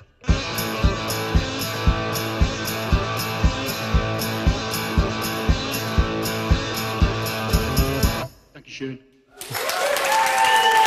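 Blues guitar song with a low thud keeping the beat about twice a second, after a brief break at the very start. The music stops about eight seconds in, and after a moment's lull a studio audience begins applauding near the end.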